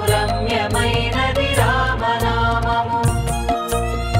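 Telugu devotional song: a voice sings a long, ornamented, gliding phrase over instrumental accompaniment and a steady percussion beat, the singing giving way to held instrumental notes near the end.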